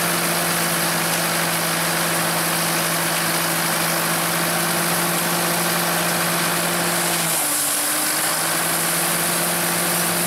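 Nuffield tractor engine running steadily as it tows a Dronningborg D600 trailed combine harvester through wheat, with the constant rushing noise of the combine's machinery behind it. The engine note sags about seven seconds in, then climbs back.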